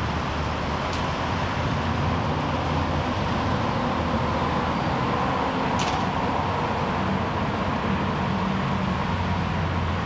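Steady traffic noise: a continuous hum and rush of vehicles, with a couple of faint brief ticks.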